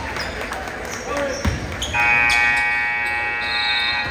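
Gym scoreboard horn sounding one long, steady blast that starts about two seconds in, with the game clock at zero marking the end of the period. Before it, a basketball bounces on the hardwood floor.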